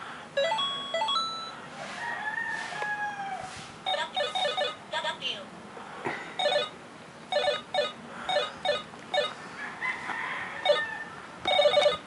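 Electronic beeping tune from a small device: a few stepped steady tones near the start, then short bursts of rapid trilling beeps repeated again and again from about four seconds in, loudest at the end.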